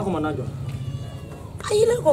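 A person's voice in conversation: a short spoken burst at the start, a lull, then a louder, rising vocal exclamation near the end.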